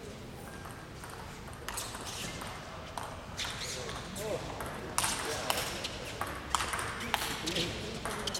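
Table tennis rally: the ball clicking off paddles and the table, starting a little under two seconds in and coming quicker and louder in the second half.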